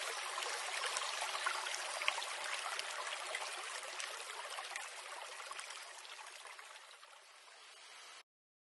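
Babbling stream of running water, a steady splashing rush that fades out gradually.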